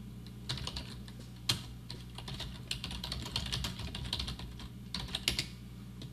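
Typing on a computer keyboard: a quick, uneven run of key clicks starting about half a second in and stopping shortly before the end, with one louder keystroke near the start.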